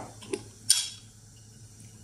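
Two light clicks of kitchenware being handled, about a third of a second apart, the second louder, followed by quiet kitchen room tone.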